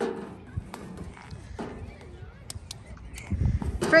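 A few light taps and knocks of a toddler's rubber boots on a steel playground slide as she shifts to sit at the top, with a brief low rumble near the end.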